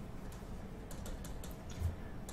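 Faint, irregular clicking of a computer mouse button pressed and released stroke by stroke while a word is handwritten in a paint program, with a soft low thump near the end.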